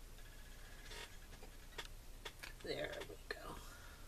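Light handling sounds of small craft items on a mat: a few sharp little clicks and a brief rustle, with a soft murmured word a little under three seconds in.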